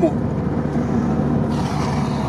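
Cabin noise of a ZAZ-968M Zaporozhets on the move: its rear-mounted air-cooled V4 engine running steadily under road noise. About one and a half seconds in, a brighter hiss joins.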